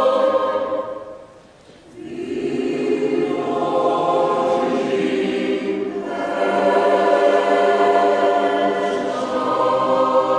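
A mixed choir of men's and women's voices singing a Ukrainian choral song in sustained chords. The sound dies away about a second in and breaks off briefly. The voices then come back in low, and swell fuller and higher from about six seconds.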